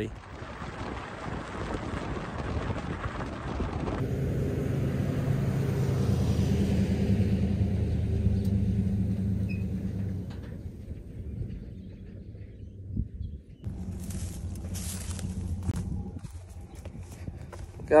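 Pickup truck engine and the rumble of a tandem-axle trailer loaded with round hay bales, growing louder for a few seconds and then fading away.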